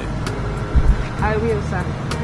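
A parked SUV's engine idling, a steady low rumble under a short spoken phrase, with a brief low thump a little under a second in.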